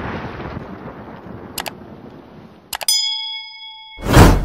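Video-outro sound effects: the tail of an explosion effect dying away, then about three seconds in a mouse click and a bright notification-bell ding that rings on steadily. A short click comes midway.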